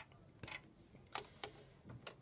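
Hands handling a wooden paddle pop stick and parts at the rollers of a Cricut Expression cutting machine, making a few faint clicks and taps spread over two seconds.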